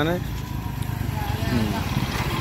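Hero Honda motorcycle's single-cylinder four-stroke engine running as the bike rides up close, getting louder as it approaches.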